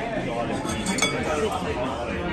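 A single sharp clink of tableware on a ceramic plate or glass, about a second in, with a brief ring, over the steady chatter of diners.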